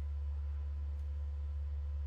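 Steady low electrical hum, with fainter, higher steady tones above it and nothing else over it.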